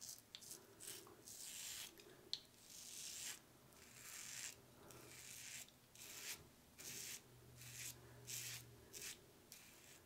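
Blackland Sabre safety razor with a sixth-use GEM PTFE blade scraping through two days' stubble, faint. It goes in a run of short strokes about two a second, with one sharper tick a little over two seconds in. The blade is still cutting smoothly.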